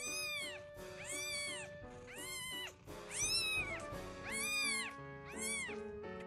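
Newborn kitten mewing: six high-pitched cries, about one a second, each rising and then falling in pitch.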